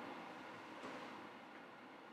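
Near silence: faint room tone, with a slight faint noise about a second in.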